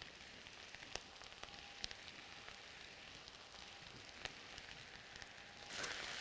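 Cabbage, carrots and onions frying in bacon fat in a skillet: a faint, steady sizzle with scattered small pops and crackles. Just before the end a spatula starts stirring through the pan, louder.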